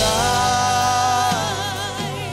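Live worship music: a band with keyboards plays while a singer holds one long note with vibrato, stepping down in pitch a little past halfway.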